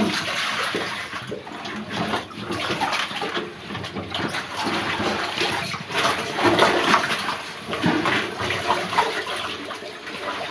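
Water splashing and sloshing irregularly as a drysuited cave diver crawls through a shallow, low-roofed pool.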